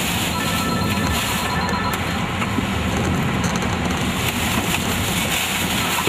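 Tornado winds blowing hard around a vehicle, heard from inside the cabin as a loud, steady rush of noise over a low rumble.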